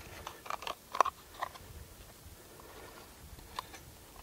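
Small hard plastic stove cases being opened and handled: a run of light clicks and taps, the sharpest about a second in, then a single faint click near the end.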